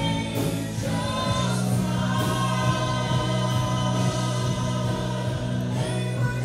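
Live church worship music: a small band of singers with guitars, the voices holding long notes over a steady sustained chord.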